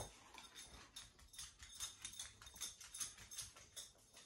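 A small dog's claws clicking on a wooden parquet floor as it trots about, a faint, quick patter of light ticks.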